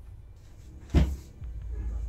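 A single sharp thump about a second in, over a low steady rumble.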